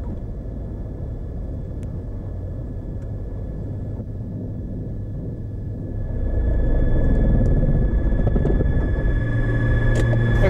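Beechcraft Bonanza's flat-six piston engine running at low power while the plane taxis, a steady low rumble that grows louder about six seconds in.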